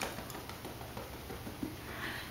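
Faint, scattered soft taps of fingertips patting makeup into the skin of the face, over quiet room tone.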